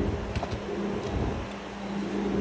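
A few light clicks and knocks as an exterior storage compartment door on the side of a travel trailer is shut and latched, mostly in the first second, over a steady low hum.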